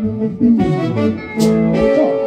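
Live band playing a praise song: held keyboard or organ chords with electric guitar, and a sharp percussive hit about one and a half seconds in.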